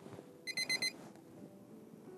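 Digital alarm beeping: a quick burst of four short, high electronic beeps about half a second in, typical of a wake-up alarm.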